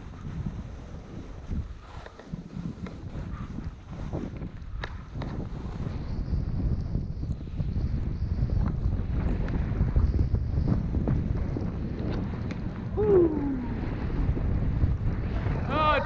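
Wind rushing over a skier's camera microphone, mixed with skis running through deep fresh powder snow. It grows louder about halfway through as speed builds.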